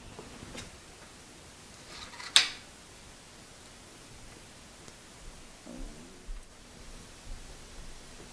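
A hex key used to set a stop on a milling machine table: a single sharp metallic click about two and a half seconds in, with a few faint handling noises later on.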